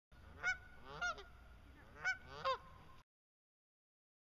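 Goose honking: four short honks in two pairs, over a faint low hum, ending abruptly about three seconds in.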